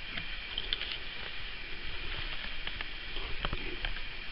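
Faint clicks and light handling noise from fingers working at a laptop's opened chassis and ribbon-cable connector, over a steady low hiss.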